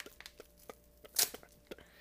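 Orange paper mailer envelope being torn open by hand: a few light clicks and rustles, with one short, loud tear about a second in.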